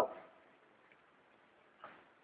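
A pause in a man's sermon: his last word dies away over about half a second, then near silence with one faint short sound shortly before he speaks again.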